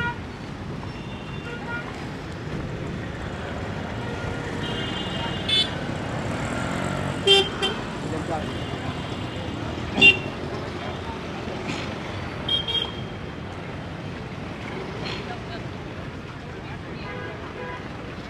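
Steady street traffic noise with short vehicle-horn toots several times, the loudest about ten seconds in.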